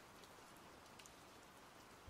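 Near silence: a faint steady hiss, with a couple of tiny ticks about a second in.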